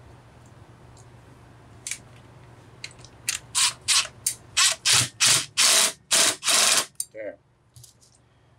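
Cordless impact driver hammering in about ten short bursts, the later ones longer, as it runs down the flywheel nut on a Homelite Super XL chainsaw. The nut is being tightened because the flywheel had worked loose with its lock washer missing. A few faint tool clicks come before the bursts.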